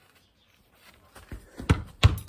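A few short, dull thumps in the second half, the loudest just before the end: a football being played on grass, kicked and struck, along with footsteps.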